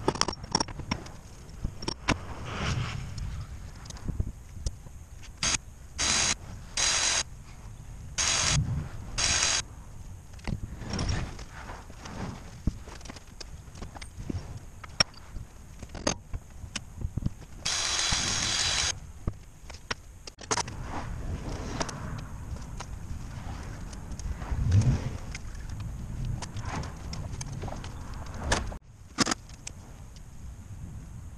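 Hammer blows on a seal driver, driving a new seal into a truck wheel hub: a series of sharp, irregular strikes, several in quick succession in the first third.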